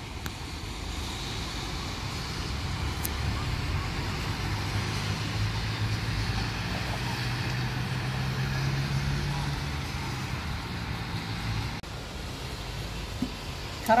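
Road traffic on wet tarmac: the hiss of tyres on the wet road, with a vehicle's low engine hum that swells in the middle and fades away, over light rain.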